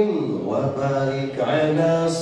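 Male voice chanting a devotional Arabic salawat into a microphone, drawing out long melodic notes that step up and down in pitch.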